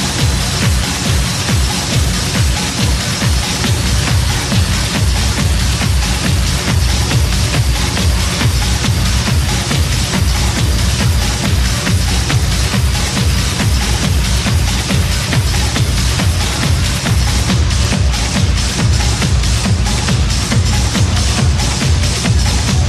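Techno from a live DJ mix: a dense electronic dance track with a steady driving beat and heavy bass. Near the end the high end starts to pulse in time with the beat.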